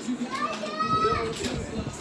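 A child's voice talking, the words indistinct.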